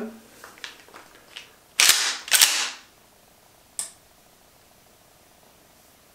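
Pump-action shotgun being racked: after a few light handling clicks, two loud metallic strokes about half a second apart as the fore-end is pulled back and pushed forward. A short sharp click follows about two seconds later. The double sound of the rack stands in for the two claps that set off a Clapper sound-activated switch.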